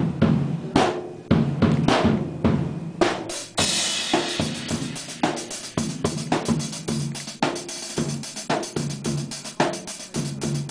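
Band jamming hard rock: a drum kit played with repeated kick and snare hits, a cymbal crash washing in about three and a half seconds in and ringing on, with an electric guitar sounding underneath.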